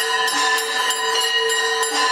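Hindu temple arti bells rung rapidly and without pause: a steady metallic ringing with quick repeated strikes.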